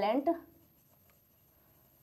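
Faint strokes of a marker pen writing on a whiteboard, after a woman's last word trails off in the first half second.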